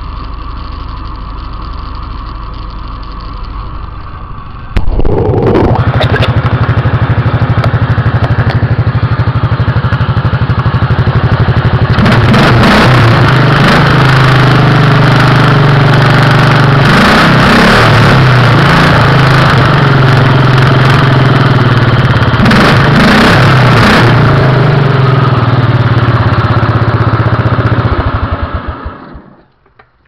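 Simplicity garden tractor's small engine running on its new carburetor, heard close up. It gets suddenly much louder about five seconds in and louder again at about twelve seconds, then its firing slows and it stops just before the end.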